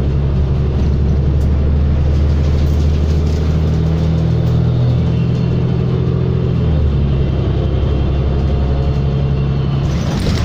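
Inside a 2019 New Flyer XD40 diesel city bus under way: a steady low drone of the engine with road noise. The engine note shifts about seven seconds in.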